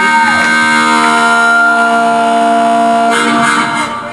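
Harmonica played into a vocal microphone through the PA: a note bent up and back down at the start, then a long held chord that fades near the end.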